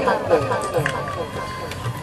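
Speech: a man's voice, growing fainter toward the end.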